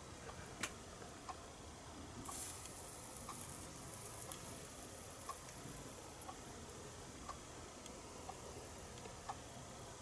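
A brief faint sizzle of rosin flux under a soldering iron, about two seconds in, over quiet room sound with a faint tick about once a second.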